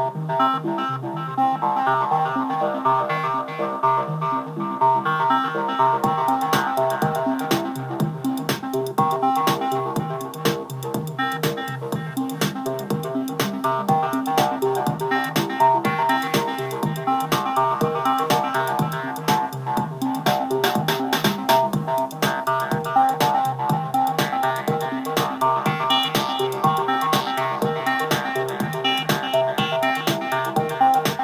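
LittleBits modular synth playing a repeating four-note square-wave sequence through a filter whose cutoff is stepped by a random voltage generator, with delay, so each note changes brightness. A Teenage Engineering PO-12 drum machine, triggered by the same sequencer, keeps a steady beat, with low drum hits coming in about six seconds in.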